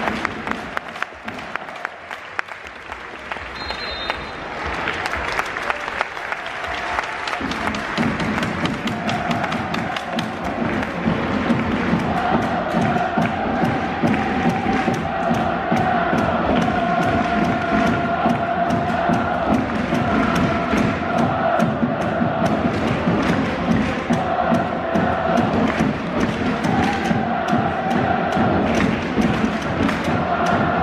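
Stadium crowd of football supporters singing a chant together to a steady beat. It swells in about eight seconds in out of a quieter crowd din with applause, then holds on.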